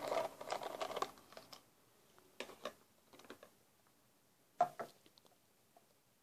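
Plastic trigger sprayer being unscrewed and taken off an empty plastic spray bottle: a run of small plastic clicks and rattles in the first second and a half, then a few sparse clicks, the loudest a pair about four and a half seconds in.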